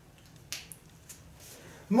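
A quiet pause in a small room with a few faint, sharp clicks, about three in the first half; a man's voice starts just before the end.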